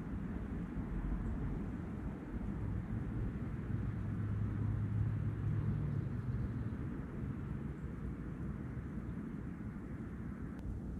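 Outdoor riverbank ambience: a low, steady rumble of wind on the microphone. Under it, a low hum swells for a few seconds around the middle and then fades, like a distant engine passing.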